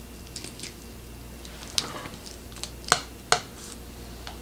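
Faint handling of a foil cheese-sauce pouch squeezed over a plastic cup, with a few sharp clicks in the second half as a metal fork is picked up and set into the cup.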